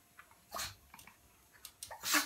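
Small terrier puppy giving a short noisy huff about half a second in, then a few light clicks and scuffs as it moves about and jumps on the tiled floor.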